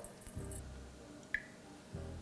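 Faint patter of salt sprinkled over julienned apple and onion in a stainless steel bowl, then a single light tick.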